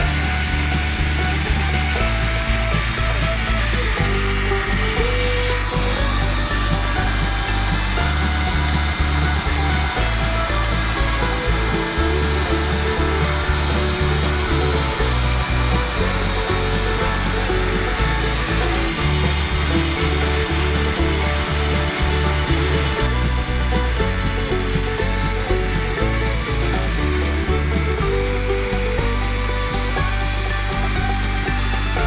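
Small engine-driven coffee huller running steadily as it hulls dried coffee cherries, with background music playing over it.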